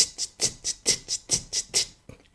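Programmed rock drum track at 133 bpm: the hi-hat ticks in even eighth notes, about four and a half a second, two to each beat, with kick and snare hits beneath. It stops abruptly near the end.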